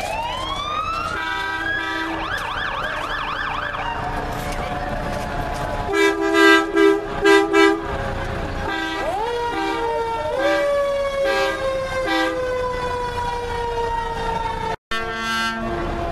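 Fire engine sirens: a siren winds up at the start and warbles in fast repeated sweeps, then four loud short horn blasts sound about six seconds in. A siren then winds up again and slowly falls in pitch as it dies away.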